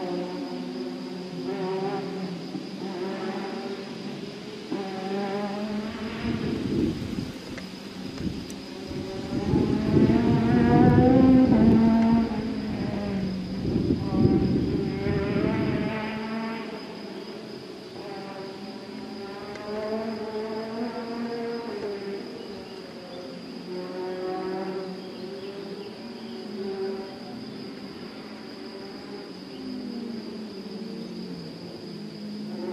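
Rally car engine heard at a distance and out of sight, revving up and dropping back again and again as it shifts gears and brakes along the stage. It grows louder with a deeper rumble for several seconds in the middle, then fades back.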